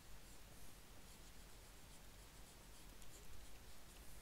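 Faint scratching of a pen stylus stroking across a graphics tablet, over low room hiss.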